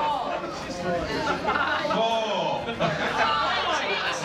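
Several people talking over one another: overlapping group chatter in a large room.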